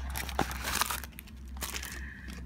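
Paper and plastic packaging rustling and crinkling as a mailer is opened and its contents are handled, in irregular crackles with a few sharp clicks.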